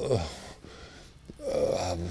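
A man's voice hesitating with 'uh, uh', a short pause, then a drawn-out voiced sound near the end.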